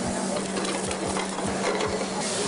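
Steady hiss of cooking in a busy restaurant kitchen, with a low steady hum underneath.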